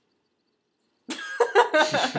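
About a second of near silence, then laughter bursts out suddenly and keeps going in quick breathy bursts.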